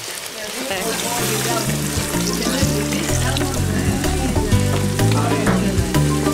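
Mackerel, onion and tomato frying in oil in a steel pot, sizzling steadily as a wooden spatula stirs them. Background music with a stepping bass line comes in about a second in.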